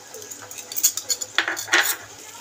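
A metal spoon and small steel cup clinking against bowls while spice powder is spooned into a bowl of curd. There are a few sharp clinks a little under a second in and a quick cluster near the end.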